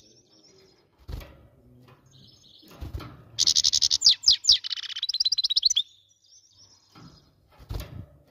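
A European goldfinch singing a fast burst of twittering trills for about two seconds in the middle. Before and after it there are a few soft low thumps, one near the end as the bird lands on a nearer perch.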